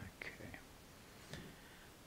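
A man's voice, faint and murmured, in a couple of short sounds under his breath over quiet room tone.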